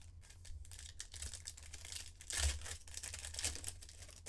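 A Panini Prizm foil trading-card pack wrapper being torn open by hand, with crinkling of the wrapper. The loudest rip comes a little past halfway.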